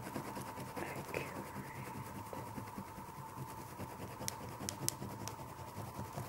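Oil pastel being rubbed and blended across paper, a low dry scratching, with a few sharp ticks about four to five seconds in. A steady thin tone sits underneath.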